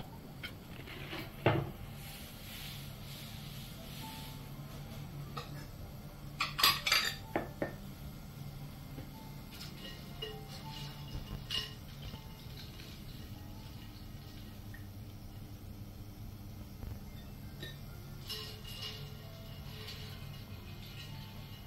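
Porcelain dishes and utensils clinking and knocking as crab is handled and plated: a sharp knock about 1.5 s in, a cluster of clinks around 7 s, and a few more near 11 s and 18 s, over a steady low hum.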